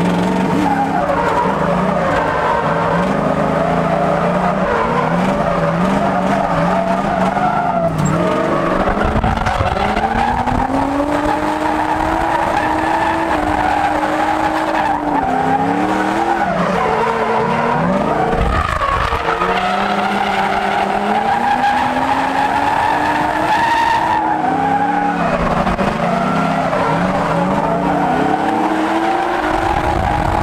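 Drift car engine revving hard, its pitch rising and falling again and again through the slides, with tyres squealing and skidding, heard from inside the car's cabin. The revs drop sharply a little past halfway through, then climb again.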